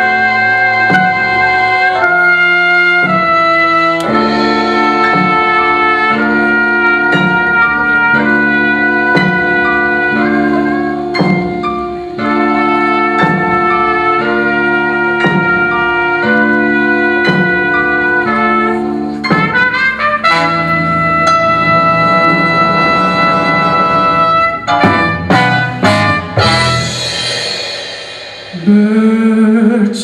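Live blues band playing an instrumental passage: a horn section of trumpet, trombone and saxophone holds chords over drums, electric bass and keyboard, with a drum stroke about once a second. Near the end the band thins out and a woman's singing voice comes in.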